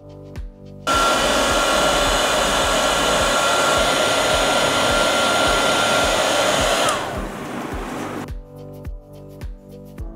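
Small heat gun blowing hot air to shrink heat-shrink tubing over motor wire joints: switched on suddenly about a second in, running as a loud steady hiss with a thin whine, then switched off near seven seconds, the whine falling as the fan spins down.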